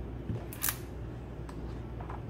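A page of a magazine-style art booklet being turned by hand: a short paper swish about half a second in, then a faint click, over a steady low hum.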